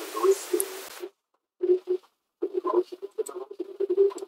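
Steady microphone background hiss and hum that cuts off abruptly about a second in, as a noise-suppression filter is switched on. After that, faint sound comes through only in short, chopped fragments with dead silence between them, the way a gate or suppressor passes only the louder moments.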